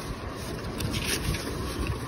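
Clear plastic zip bag crinkling faintly, with the case's fabric rubbing, as the bag is handled, over a steady low rumble.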